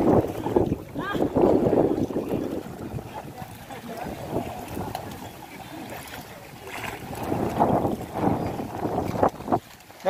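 Water sloshing and splashing as people wade through a canal and drag water hyacinth through it. The sound swells over the first two seconds and again from about seven to nine and a half seconds, with faint voices of the crew and wind on the microphone.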